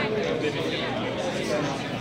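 Indistinct chatter of several people talking at once in a room.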